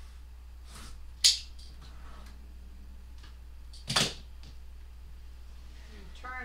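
Quilting ruler and cutter handled on a cutting mat while a quilt block is trimmed: a sharp click about a second in and a second, slightly longer one about four seconds in, with a few faint ticks, over a steady low hum.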